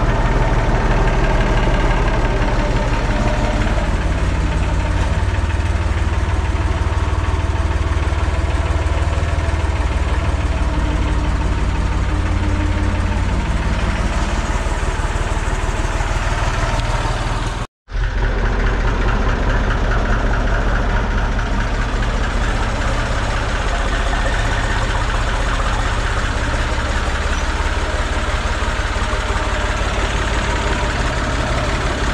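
An IMT 539 tractor's three-cylinder diesel engine idling steadily, cutting out for an instant about two-thirds of the way through.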